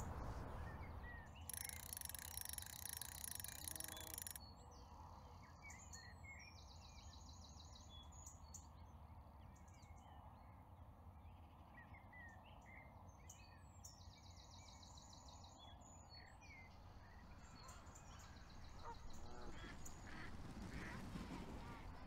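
Faint outdoor ambience: small birds chirping, with a short rapid trill twice, over a low steady background rumble.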